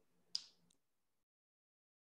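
Near silence, broken by one short, sharp click about a third of a second in and a fainter tick just after.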